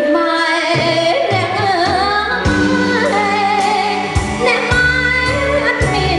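A woman singing a melody with vibrato into a microphone, backed by a live band with keyboard and drums.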